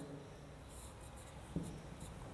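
Marker pen writing on a whiteboard: faint scratchy strokes, with a light tap about one and a half seconds in.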